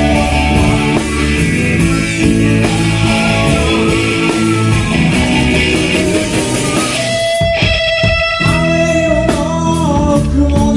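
Live rock band playing an instrumental passage led by electric guitar over bass and drums. About seven seconds in the low end drops away for a second or so, leaving ringing guitar notes, before the full band comes back in.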